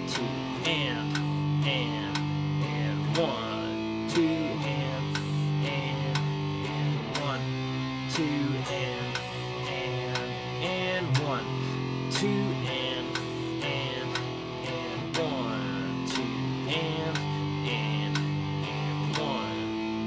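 Electric guitar strumming power chords in a steady rhythmic pattern, the chord changing every second or two.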